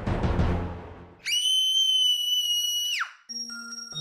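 Horror-intro soundtrack: a dense drum-backed music passage fades out about a second in. A piercing, high whistle-like tone follows, holds for about two seconds and ends in a steep downward glide. Steady electronic keyboard notes begin near the end.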